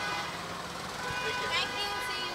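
Street bustle: indistinct voices calling out over traffic, with steady horn-like tones sounding through.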